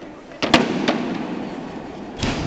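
A loud, sharp smack of a wrestling blow landing about half a second in, echoing in the hall, with a lighter slap just after.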